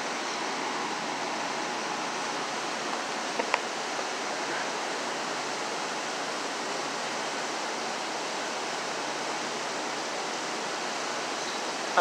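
Steady rush of whitewater in the Passaic River rapids below the Great Falls, an even hiss-like roar of moving water. A single brief click sounds about three and a half seconds in.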